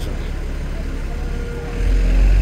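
City street traffic: a steady low rumble of vehicles that swells louder near the end.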